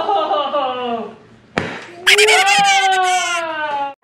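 Loud, drawn-out wordless cries from a person, the second one sliding down in pitch, with a single sharp pop about a second and a half in, most like a foam-ball popper gun firing.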